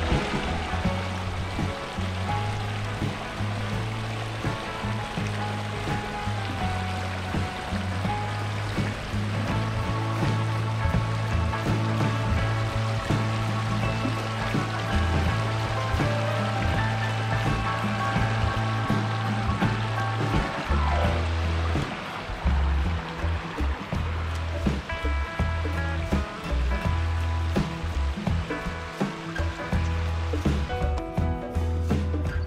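Background music with a steady bass line, the bass pattern changing about two-thirds of the way through, over the rushing of a shallow creek running over rocks.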